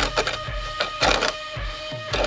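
Hooyman manual seed spreader's disc spun by hand, giving an uneven run of short clicks and rattles as jammed clover and chicory seed is cleared out of it. The clicks sit over background music with steady guitar-like notes.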